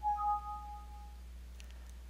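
Windows alert chime of two clean tones, a lower one and a higher one just after, ringing together for about a second and fading. It is the sound of an error dialog popping up, here the relay refusing a setting change because it is in the wrong device state.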